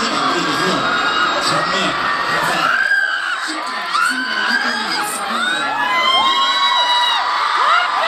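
Concert crowd of fans screaming and cheering, many high-pitched voices overlapping and rising and falling.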